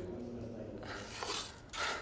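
A winded man breathing heavily through his mouth: three short, hissy breaths in the second half, about half a second apart, over a faint room hum.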